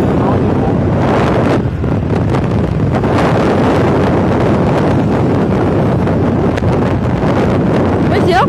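Loud, steady wind rush buffeting the microphone of a camera riding on a moving motorbike, with a brief dip about two seconds in.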